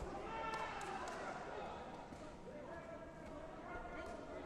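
Indistinct voices of people talking in a sports hall, with a few short sharp knocks about half a second to a second in, from the taekwondo bout's kicks or footwork on the mat.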